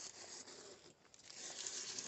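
Blue painter's tape being peeled off painted denim: a faint ripping, rustling noise that drops away briefly about halfway through.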